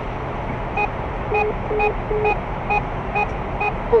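Speed-camera warner in the car sounding a run of about seven short beeps, roughly two a second, over steady road noise inside the car's cabin: a speeding alert, the car doing 100 in an 80 zone inside an average-speed check section.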